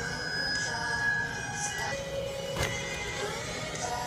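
Music with long held notes, one high note for about the first two seconds and then a lower one, with a single short click about two and a half seconds in.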